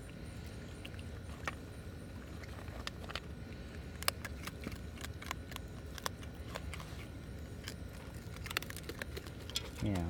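Baby raccoon eating dry kibble from a metal tray: irregular crunching and small clicks of pellets against the tray, over a low steady hum.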